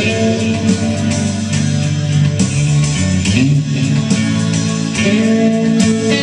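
Live rock band jamming: electric guitar playing over drums in a 6/8 groove.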